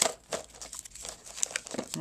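Wrapped snack packets rustling and crinkling as a hand picks through them in a box: a sharp crackle at the start, then scattered smaller crinkles.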